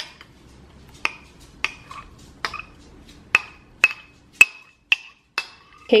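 A metal spoon tapping against the rim of a container to knock thick whipped coffee off it: about ten sharp taps, a little under two a second, each with a brief ring.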